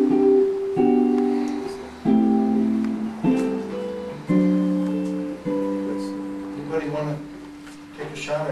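Semi-hollow electric guitar playing a chord progression: five chords struck about a second apart, each left ringing and fading, the lowest note stepping down with each chord in a descending bass line. Quiet voices come in near the end.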